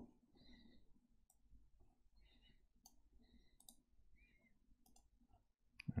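Near silence with faint, scattered clicks and light scratches, typical of a stylus tapping and moving on a tablet.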